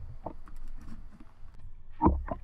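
Water sloshing and splashing at the surface, with a few irregular knocks, as a large mahi-mahi is hauled out of the water into a small boat. The sound grows fainter toward the end.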